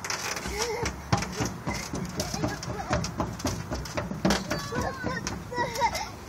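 Footsteps knocking irregularly on a metal footbridge deck, with a small child babbling without words over them.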